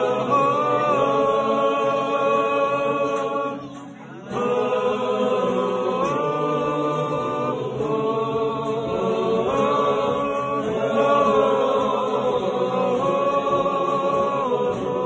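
A group of men singing a melody together in long held notes, with acoustic guitar accompaniment. The singing breaks off briefly about four seconds in, then resumes.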